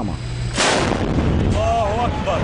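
A heavy gun mounted on a pickup truck fires once, about half a second in: a single loud blast whose rumble dies away over about a second. A man's voice calls out near the end.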